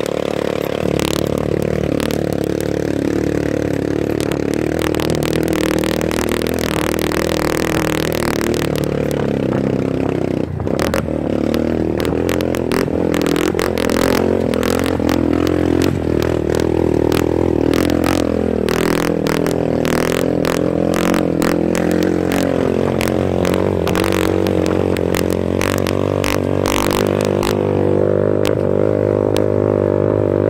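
Motorcycle engine running as the bike climbs a rough dirt trail, heard from on board, its pitch rising and falling with the throttle. Frequent knocks and rattles come from the bike jolting over the ruts.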